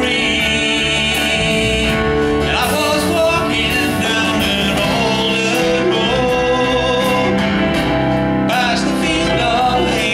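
Country song performed live: a male lead vocal singing with vibrato over strummed acoustic guitar and band backing.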